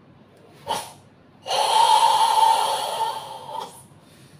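Forceful Sanchin kata breathing: a short, sharp breath about a second in, then a long, loud, strained exhale pushed from the throat for about two seconds, fading near its end.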